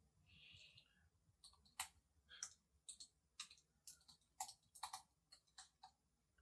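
Soft, irregular clicks, about a dozen spread unevenly over a few seconds, against near silence, with a faint brief hiss near the start.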